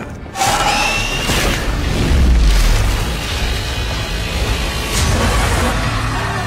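Television episode soundtrack: music with a deep boom about two seconds in.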